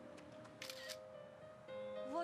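DSLR camera shutter firing a quick burst of several frames about half a second in, over soft background music.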